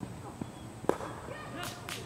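A single sharp crack of a cricket bat striking the ball, about a second in, with a few fainter clicks around it.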